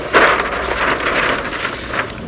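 Large sheets of paper rustling as they are unrolled and spread out on a table, a dense crackly rustle that fades out near the end.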